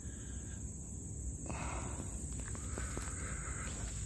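Insects chirring in a steady, high-pitched outdoor chorus, with a low rumble underneath and a few faint ticks in the second half.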